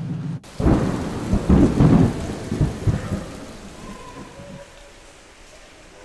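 A roll of thunder over rain: a heavy rumble starts about half a second in and dies away by around four seconds, leaving a faint steady hiss of rain.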